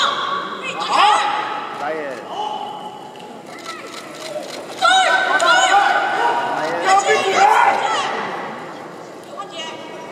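Spectators in a large hall shouting encouragement, several voices overlapping, loudest from about five seconds in.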